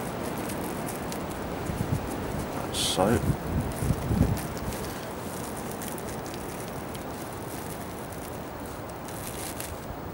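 Soft, steady rustling with light crackles as pellets and a PVA mesh are worked down inside a plastic loading tube by hand.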